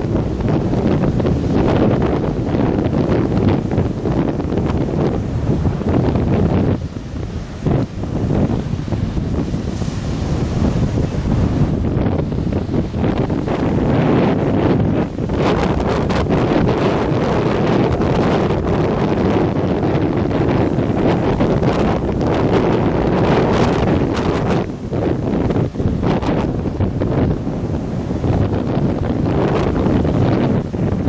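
Strong, gusty wind buffeting the microphone: a loud, dense rumble that eases briefly about seven seconds in and again near twenty-five seconds.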